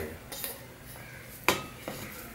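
Stainless steel bowl clinking against a steel plate as rice is tipped out, with a few light taps, then one sharp ringing metallic clink about one and a half seconds in and a lighter one near the end.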